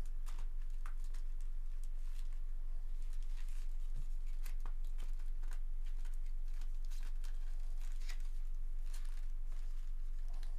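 Foil trading-card packs rustling and crinkling as gloved hands shuffle and mix a stack of them, in irregular crisp clicks, over a steady low electrical hum.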